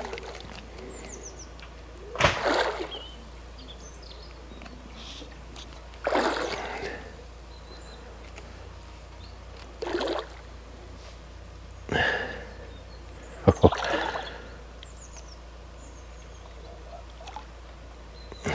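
A hooked fish splashing at the surface close to the bank as it is played on a feeder rod, in short separate bursts every few seconds.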